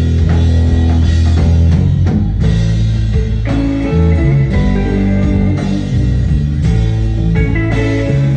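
Live instrumental surf rock band playing loud: two electric guitars over bass guitar and a drum kit.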